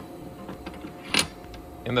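A single sharp metallic clink about a second in: a steel 1-2-3 block set down into a milling-machine vise, over a faint steady hum.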